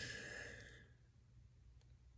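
A person's breathy exhale, like a sigh, fading out within the first second, followed by near silence.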